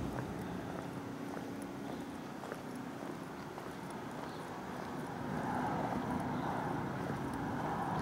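Outdoor street background: a steady low hum and even noise with a few faint ticks, likely footsteps on asphalt, growing somewhat louder about five seconds in.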